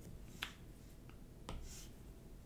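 Two faint, sharp clicks about a second apart over low room noise.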